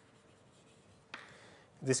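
Chalk writing on a blackboard: after about a second of near quiet, a short stroke of chalk begins suddenly and lasts about half a second. A man's voice starts just before the end.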